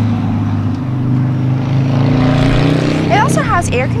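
A steady low engine hum that rises slightly in pitch around the middle, with speech starting near the end.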